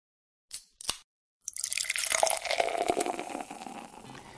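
Two short sharp clicks, then liquid pouring into a container with many small drips and pops for about two seconds, fading out.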